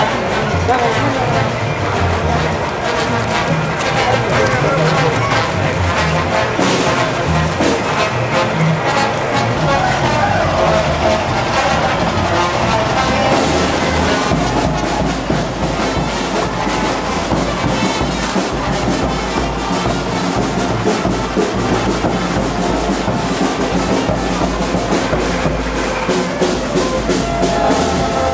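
Brass band music playing loudly and steadily, with voices underneath and a low rumble that grows stronger about halfway through.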